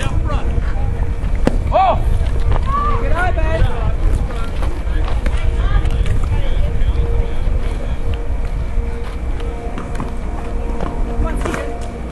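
Wind rumbling on the microphone under distant voices calling out, with one sharp knock about a second and a half in.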